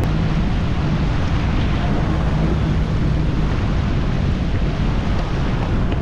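Steady wind noise on the microphone, mixed with rushing water and the running of jet skis under way, with no break or change.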